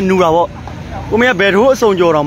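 A man's voice talking loudly close to the microphone, with a short pause about half a second in.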